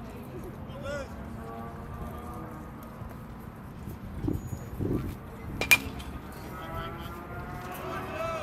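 A pitched baseball striking something hard: one sharp, loud crack about two-thirds of the way in. Faint voices talk in the background.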